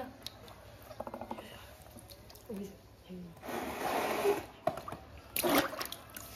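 Water splashing and sloshing in a plastic tub as hands grab at live eels, with a longer splash about halfway through and a short sharp one near the end.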